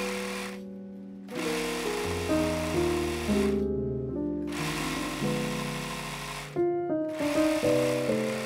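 Overlock serger stitching a knit hem, running in spurts of about two seconds with short stops between, over soft piano background music.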